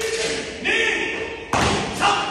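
A barefoot karate kata on foam mats: fast strikes and stance changes, with a sharp thud about one and a half seconds in and another near the end.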